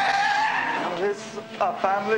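A man screaming in one long, high cry that lasts about a second. Near the end a man's raised voice starts speaking.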